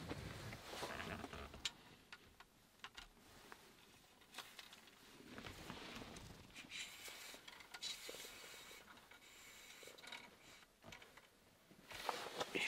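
Faint rustling of clothing and gear being handled at close range, with a few scattered small clicks and taps.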